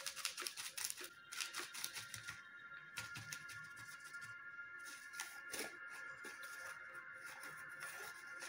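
Light paper rustling and crinkling, with small taps, as hands press a card disc onto a pleated tissue-paper rosette and then pick the rosette up. The handling noises are busiest in the first few seconds and thin out after that. Faint background music plays throughout.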